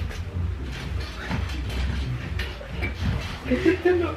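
Comforter rustling and a mattress shifting as a person climbs into bed and settles under the covers, over a steady low hum.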